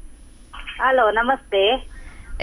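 A caller's voice coming in over a telephone line, thin and narrow-sounding, speaking a few words starting about half a second in.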